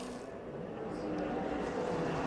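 A pack of NASCAR Cup stock cars running at speed: a steady drone of many V8 engines that swells slightly as the pack comes on.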